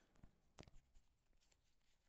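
Near silence, with a few faint soft ticks in the first second from small paper slips being handled.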